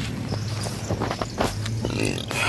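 Bags and luggage being shifted about in a car trunk: a few short knocks and rustles, over a steady low hum.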